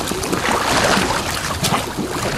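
Water splashing and churning as a large fish thrashes at the surface against the side of the boat, with wind buffeting the microphone.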